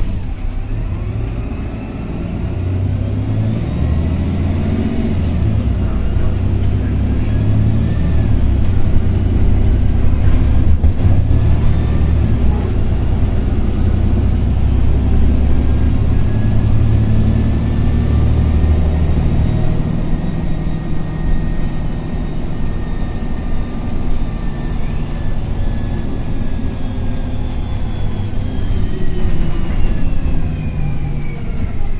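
Karosa B961E articulated city bus heard from inside the passenger saloon, its diesel engine pulling hard with a high whine for about twenty seconds. The engine then eases off and the bus rolls on, its whines slowly falling in pitch as it slows.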